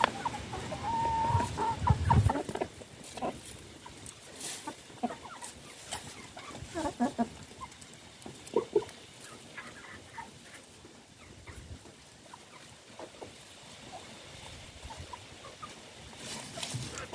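Chickens clucking softly as they peck at scattered grass, with one drawn-out call about a second in and a short low rumble around two seconds in.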